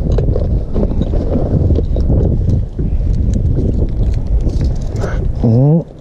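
Wind buffeting the microphone as a steady low rumble, with scattered light knocks and clicks from handling. A person's voice cuts in briefly near the end.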